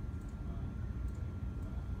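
Room tone in a classroom: a steady low rumble with a faint thin steady tone above it, and no distinct events.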